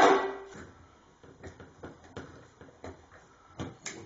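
Scattered small metallic clicks and taps, a few at a time, as stainless steel acorn nuts are handled and fitted onto the washer pump's mounting.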